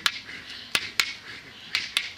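Sharp percussive strikes in pairs, the two a quarter second apart, repeating in a steady rhythm about once a second, with a soft hiss between them.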